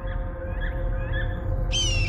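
A hawk's high screeching call that starts sharply near the end, over a low steady rumble.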